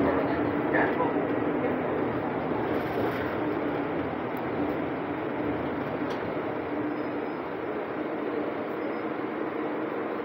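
Cabin noise of a 2020 Nova Bus LFS diesel city bus under way: steady engine and road noise heard from inside the passenger compartment. It eases a little over the first few seconds, then holds level.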